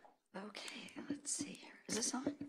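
Quiet, hushed talk picked up faintly by a podium microphone, starting just after a brief gap.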